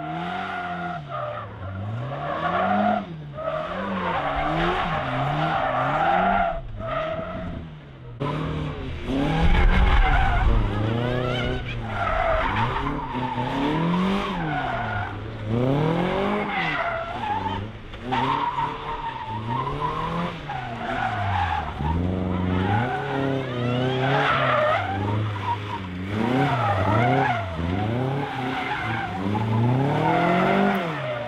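Autotest cars driven hard through tight manoeuvres: engines revving up and dropping back again and again, with tyres skidding on tarmac. A Seven-style open sports car is heard first, then a small hatchback from about eight seconds in.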